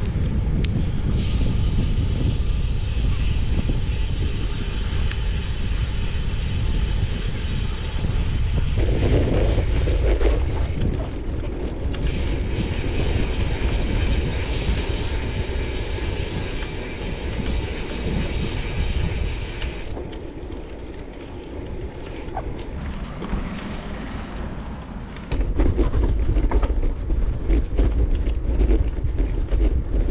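Wind buffeting the microphone of a camera riding on a moving bicycle, a steady low rumble that changes in strength as the ride goes on and grows louder for the last few seconds.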